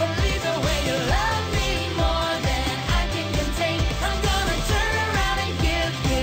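Upbeat children's pop song with sung vocals over a steady beat.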